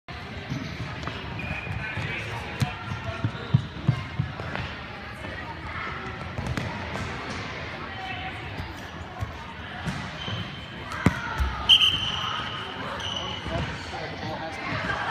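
Futsal ball thudding on a hardwood court, several sharp knocks in the first few seconds, with indistinct voices of players in the gym. A short, shrill referee's whistle blast sounds about three-quarters of the way through.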